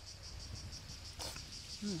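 Cicadas singing, a steady high buzz pulsing at an even rate, with a short breathy hiss just after a second in.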